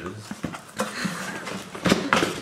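Cardboard box being opened by hand: flaps pulled open and the box handled with scattered light scrapes and clicks, then one loud sharp knock near the end.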